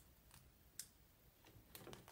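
Near silence with three faint clicks as hands handle a small cardboard box covered in mirror contact paper.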